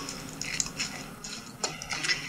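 A utensil stirring diced bell peppers, onion and shredded chicken in a mixing bowl: a few light clicks and scrapes.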